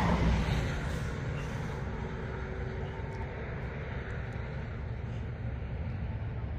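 Steady low rumble of heavy vehicle noise, easing a little over the first couple of seconds and then holding level, with a faint steady hum in the first half.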